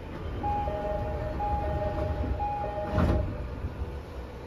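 Two-tone door-closing chime of a JR 209 series 500-subseries train, a high note then a lower one, sounding three times, then a thump as the doors shut about three seconds in.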